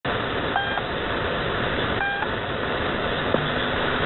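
The Pip's channel marker heard over a shortwave receiver: two short beeps about a second and a half apart over steady static hiss. About three seconds in, a low steady hum comes in.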